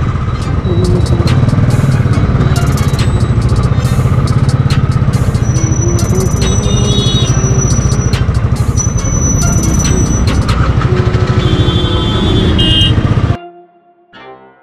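Motorcycle engine running at low road speed and idle in traffic, with a steady rapid exhaust beat. Horns toot briefly a couple of times near the middle and again near the end. The sound cuts off suddenly just before the end.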